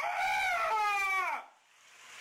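A high-pitched whining cry in two drawn-out notes, the second sliding downward, cut off about a second and a half in.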